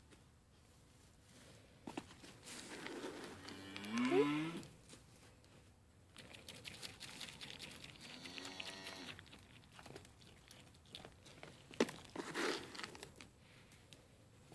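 Goats bleating twice: the first call, the loudest sound, rises steeply in pitch about four seconds in, and a second, arched call about a second long comes near the middle. Between them is crunching and crackling as the goats eat feed pellets from a hand and shift in the straw.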